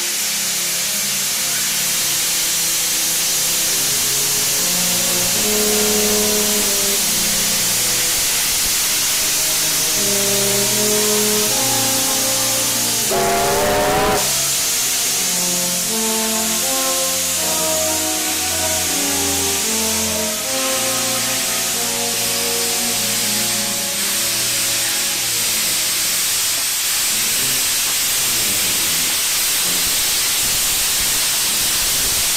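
Background music with a steady melody over the loud hiss of steam venting from Garratt AD60 6029's cylinders. A short wavering whistle sounds about 13 seconds in.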